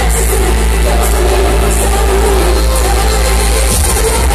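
Loud electronic dance music from a DJ set played over a club sound system, with a heavy, steady bass.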